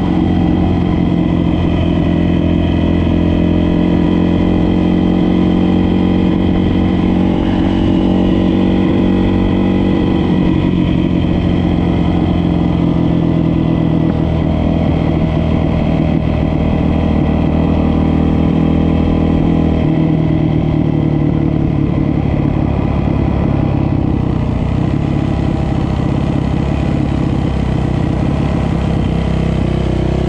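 Dirt bike engine running steadily under way, heard up close from the rider's seat, with its pitch and loudness holding nearly constant at a cruising speed.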